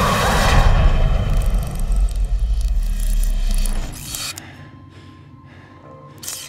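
Trailer music and sound design: a loud, deep rumble that dies away about four seconds in, leaving a quieter tail with a few faint ticks.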